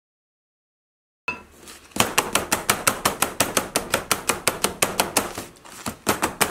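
Complete silence for about the first second, then a single knock, then a plastic tub mold full of wet plaster rapped rapidly and evenly on a metal-topped table, about five knocks a second. The bumping spreads the plaster evenly in the mold and drives out air bubbles.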